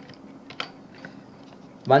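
Computer keyboard typing: a handful of light, separate keystrokes.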